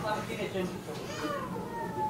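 Several villagers' voices from a field recording, talking and calling out to one another. Some of the calls are raised and drawn out, and one slides down in pitch.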